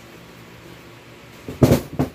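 A short cluster of loud thumps and knocks about one and a half seconds in, from a boot being handled and put down.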